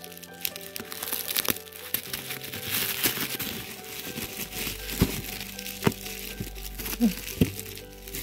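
Tape being peeled off bubble wrap, with a rasping rip strongest about two to four seconds in. Bubble wrap crinkles and a few sharp cracks follow. Soft background music plays throughout.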